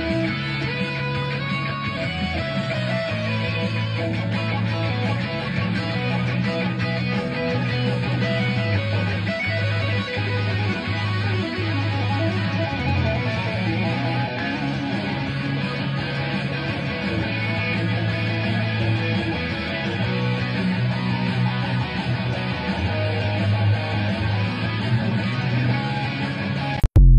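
Electric guitar solo in an anime-style rock piece, played on a Fender Stratocaster: fast lead lines over sustained low notes that change every couple of seconds, steady in level throughout.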